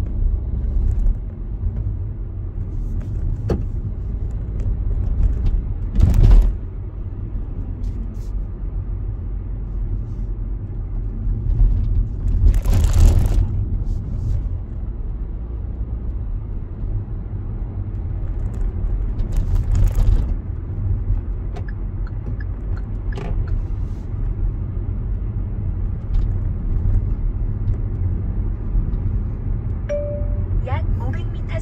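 Road and drivetrain noise heard inside a Kia Seltos cabin while it drives and gathers speed: a steady low rumble, broken by a few short whooshing bursts, the loudest about six seconds in and a longer one around thirteen seconds.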